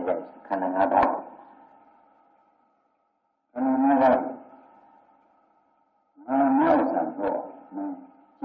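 A man's voice speaking Burmese in three short phrases with pauses between them, on an old, reverberant recording with a faint steady hum underneath.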